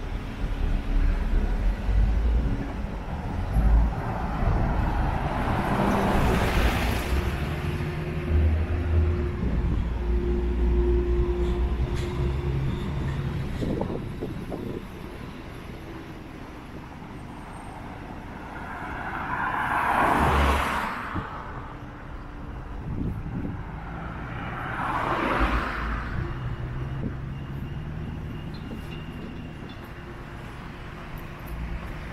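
Road traffic on the street alongside: cars driving past one at a time over a steady low rumble, with three passes swelling up and fading away.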